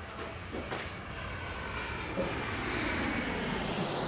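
Jet airliner engine noise growing louder, a steady roar with a faint high whine on top.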